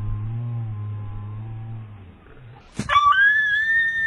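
A low steady drone, then, nearly three seconds in, a sudden loud high-pitched cry that rises slightly and holds for over a second: a dog yelping in pain after being thrown from a fourth-floor roof into bushes.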